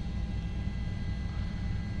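Steady low rumble of a helicopter's engine and rotors, with a few faint steady high tones above it.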